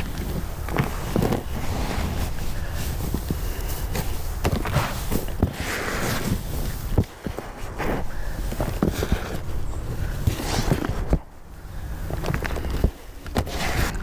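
Gloved hands digging through and turning over a loose potting mix of peat moss, perlite and compost in a plastic tub: a continuous rustle and scrape of the mix, full of small crunches and knocks against the tub.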